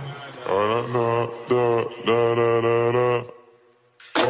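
A voice singing or chanting a slow melody in long held notes, a few of them sliding in pitch, in several phrases; it breaks off shortly before the end.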